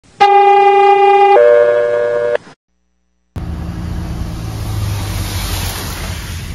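A very loud horn-like two-note tone lasting about two seconds, changing pitch partway through and cut off cleanly, then a moment of dead silence. From about three seconds in there is a steady rushing hiss with a low rumble, fitting water gushing from a sheared fire hydrant.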